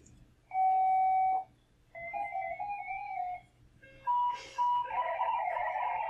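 FLDigi digital-mode modem tones played over ham radio audio: a steady single tone for about a second, then a warbling run of shifting tones, and after a short gap a denser tangle of data tones that carries on.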